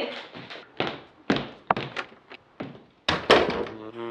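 Footsteps walking away across a floor: a string of sharp, irregular clicks every quarter to half second. About three seconds in, two louder thunks as a door is shut.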